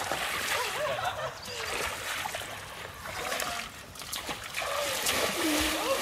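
People wading knee-deep through a muddy stream: legs splashing and sloshing through the water in irregular strokes.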